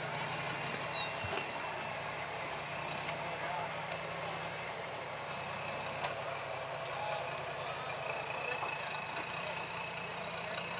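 Modified Toyota FJ40 Land Cruiser's engine running steadily at low revs as the 4x4 crawls slowly forward over creek rocks.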